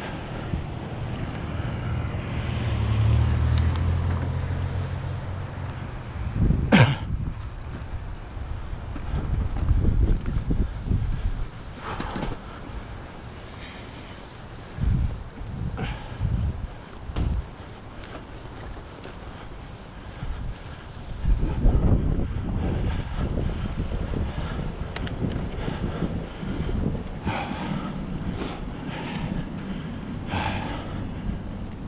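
Wind buffeting the microphone of an action camera mounted on a moving bicycle, over the rumble of tyres on the road, with a few sharp knocks from the bike going over bumps; the loudest knock comes about seven seconds in.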